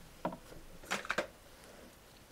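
Three light clicks and taps of Derwent Graphik acrylic liner pens being picked up and handled, plastic knocking on plastic and the tabletop.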